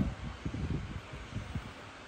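Irregular low rumble and soft thumps of handling noise from a handheld phone camera being moved, over a faint steady hiss.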